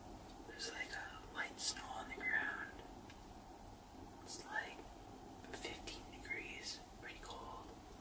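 A man whispering in a few short phrases, over a steady low background hiss.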